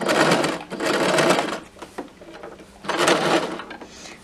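Domestic sewing machine stitching a hem with a wide hem foot, in short runs: two close runs in the first second and a half, a pause of over a second, then another short run near the end.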